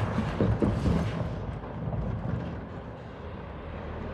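A semi-trailer truck drives past at close range and pulls away, its engine and tyre rumble fading as it goes.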